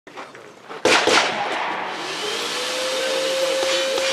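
Two sharp knocks about a second in, then a loud, steady rushing of air from a blower, with a steady motor whine setting in about halfway through.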